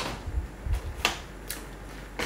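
A handful of short clicks and crinkles from a paper snack packet being picked up and handled, spread over the two seconds.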